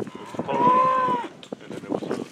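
A single drawn-out livestock call, about a second long and steady in pitch.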